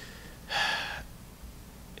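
A man takes one quick, sharp breath in close to the microphone about half a second in. It is a nervous intake of breath while he gathers his words.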